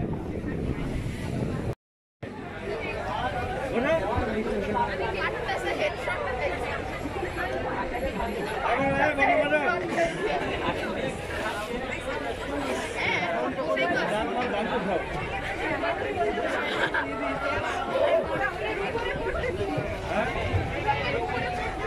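Several people talking at once, overlapping chatter with no one voice standing out. The sound cuts out completely for a moment about two seconds in.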